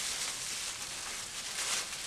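Plastic bag crinkling and rustling under plastic-gloved hands as it is gathered and twisted.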